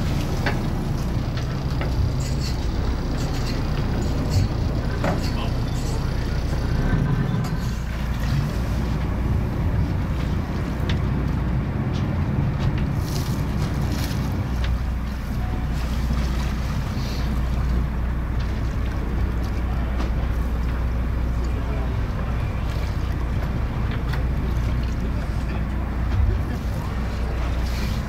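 Steady low hum of a boat's engine running, with a few faint scattered clicks and knocks.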